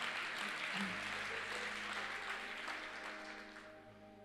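Audience applauding, strongest at first and dying away over the last second or two, over a soft sustained background music pad.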